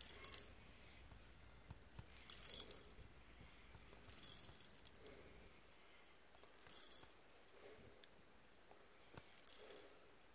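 Faint short bursts of small gold grains and pickers sliding off a pan and clicking onto the plastic tray of a pocket scale, five times, a couple of seconds apart.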